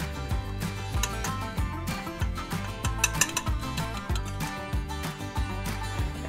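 Background music with a steady beat, over light clinks of a metal fork scraping a glass bowl.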